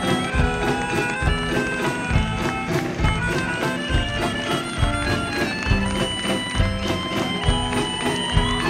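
Live band playing an instrumental passage: a drum kit's steady beat under held, reedy melody notes from a melodica, with guitar.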